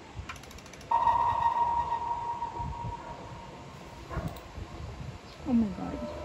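A single click, then a steady electronic tone that starts about a second in and fades away over a few seconds: the opening of a music video playing from laptop speakers. Near the end an excited voice cries out.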